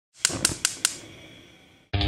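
Four quick, sharp clicks in a steady row, about five a second, with a fading ring after them. Guitar music starts abruptly right at the end.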